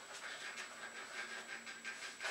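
Whiteboard eraser rubbing across a whiteboard in quick, repeated back-and-forth strokes, faint.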